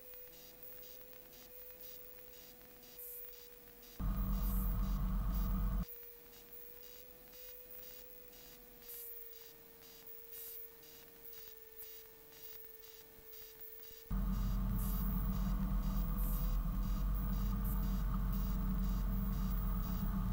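Light aircraft intercom audio with a faint steady electrical whine that drifts slightly in pitch. A louder rush of engine and wind noise cuts in abruptly about 4 seconds in for about two seconds, then again from about 14 seconds on.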